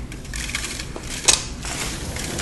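Sliding patio door and screen being slid open by hand: a low rolling rattle with one sharp click a little past halfway.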